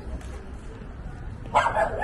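A dog barking: a short, loud run of barks starting about one and a half seconds in, over a steady low background of street noise.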